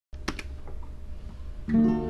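A couple of short clicks. Then, near the end, an acoustic guitar chord is strummed and rings on, over a low steady hum.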